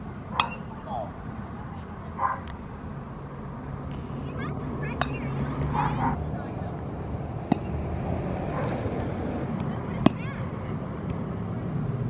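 A baseball bat hitting balls off a batting tee: five sharp cracks, evenly spaced about two and a half seconds apart, over a steady low rumble.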